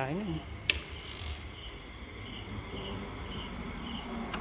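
A cricket chirping in short, evenly spaced pulses, about two a second, with a sharp click near the start.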